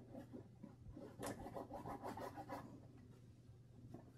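Faint scratching of a paintbrush scrubbing acrylic paint onto canvas, with a busier run of strokes in the middle, over a low steady hum.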